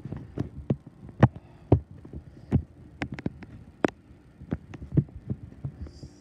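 Footsteps and handheld-camera bumps while walking across a carpeted floor: a string of dull, irregular thumps, roughly one to two a second.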